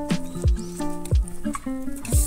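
Background music with a regular kick-drum beat under a melody of held notes.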